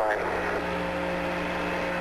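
Steady hum and hiss of the Apollo 11 radio downlink from the lunar surface: a low hum with a couple of steady higher tones under an even hiss, in a pause in the transmitted speech.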